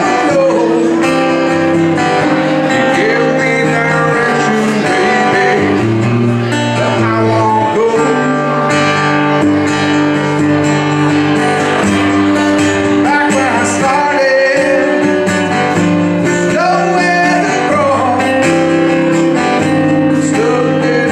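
A man singing into a microphone with acoustic guitar accompaniment, the voice holding long notes with vibrato over sustained guitar chords.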